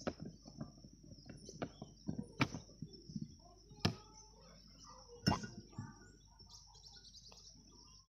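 A few sharp plastic knocks and clicks, three of them louder, as a blender jug is lifted off its base and handled, over a steady high drone of insects.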